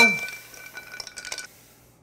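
A glass is struck and rings clearly for about a second and a half, with a few lighter clinks of glassware as the cocktail is handled.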